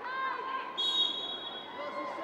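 A player's shout on the pitch, then a referee's whistle blown once, a steady high blast of about a second, signalling that the free kick on the edge of the area can be taken.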